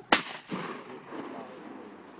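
A single sharp, very loud bang, followed about a third of a second later by a weaker knock.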